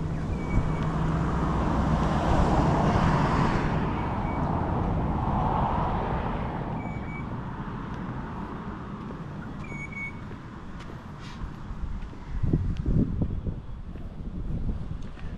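A road vehicle passing along the street, its sound swelling over the first few seconds and slowly fading away. A few short high chirps sound through it, and there are a few low knocks near the end.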